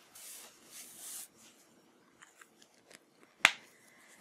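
A sheet of drawing paper being slid and handled on a desk: three short scratchy swishes in the first second or so, then a few faint ticks and one sharp click about three and a half seconds in.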